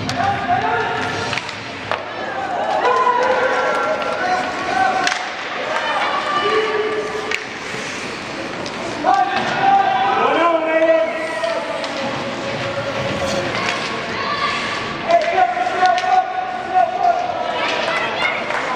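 Spectators at an ice rink yelling and cheering during a youth hockey game, several long held shouts rising and falling. Scattered sharp knocks of sticks and puck on ice and boards come through between the shouts.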